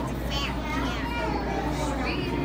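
Indistinct children's voices chattering and calling out in a crowd, over a steady low hum.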